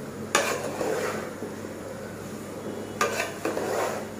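Metal spatula stirring and scraping through cooked biryani rice in a metal pot: two scooping strokes, one about a third of a second in and another at about three seconds, each with a sharp scrape against the pot.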